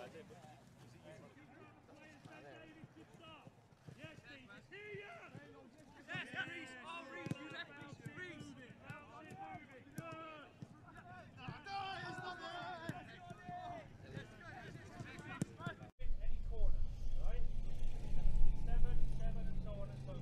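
Indistinct voices of players and coaches calling out during football training, with a few sharp knocks. About 16 s in the sound cuts abruptly to a louder stretch with a steady low rumble under more voices.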